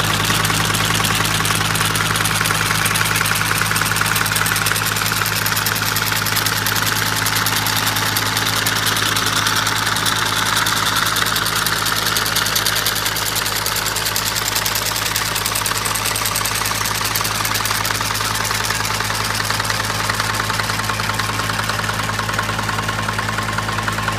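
Tractor engine idling steadily, with an even low hum that does not change.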